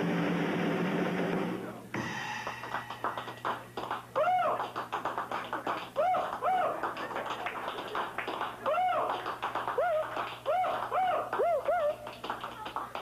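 Acoustic guitar being handled: rapid tapping and clicking on it, with short swooping tones that rise and fall several times, after a brief wash of noise at the start.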